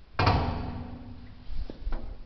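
A door banging shut with a loud, sudden bang that echoes and rings on for over a second, followed by two lighter knocks near the end.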